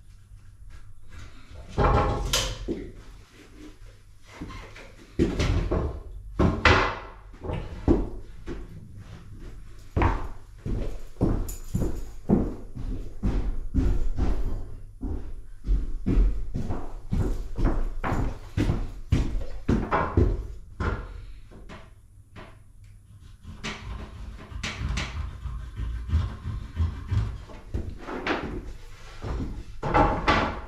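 Irregular knocks and thumps of trim boards being handled and set down and of someone moving about on a bare wooden subfloor, with quieter stretches near the start and about two-thirds of the way through. The miter saw is not run.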